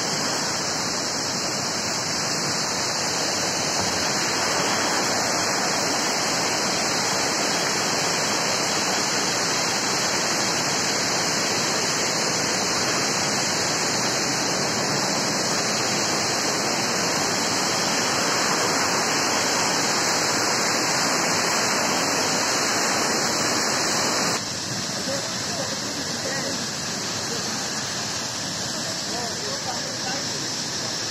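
Mountain stream rushing over rocks, a steady noise of water. About 24 seconds in the sound cuts and drops a little quieter, with faint voices under the water.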